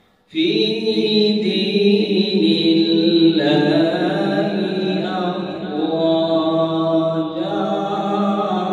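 A man reciting the Quran in a slow, melodic chanting style, holding long drawn-out notes that bend gently in pitch. The phrase begins abruptly a moment in, after a brief pause for breath.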